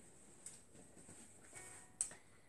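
Near silence: quiet room tone, with a faint click about half a second in and a sharper short click at the end.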